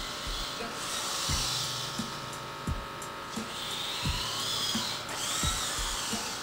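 Small servo motors in a 3D-printed robot arm whining in spurts as the arm moves, the pitch rising and falling with each motion. Background music with a slow, steady thump plays underneath.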